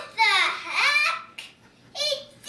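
A young girl's high-pitched voice: two short spoken phrases with falling pitch, then a pause.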